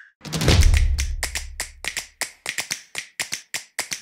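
Percussive intro sound design: a rapid run of sharp taps, about five a second, over a deep low boom that starts just after the beginning and fades out by about two seconds in.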